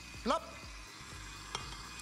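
Stand mixer running, its beater working a thick, sticky tulumba dough of cooked flour paste and eggs, with a small click about one and a half seconds in.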